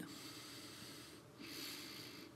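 A man's soft breath, drawn in through the nose with a light hiss about a second and a half in, after a short pause in his speech.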